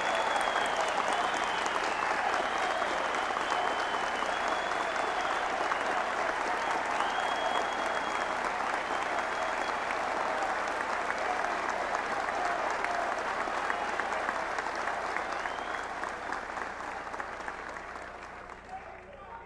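Large audience applauding steadily for a long stretch, dying away near the end.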